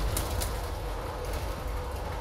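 Bus running, heard from inside: a steady low rumble of engine and road with a faint steady hum, and two light clicks or rattles within the first half second.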